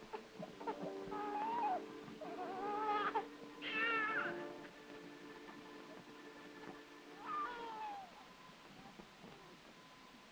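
An infant crying in a few short, wavering wails, over the sustained notes of background music.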